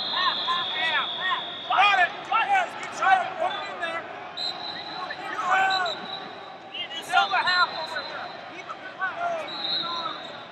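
Wrestling shoes squeaking against the mat in many short rising-and-falling chirps, over arena background noise, with a high thin steady tone that comes and goes.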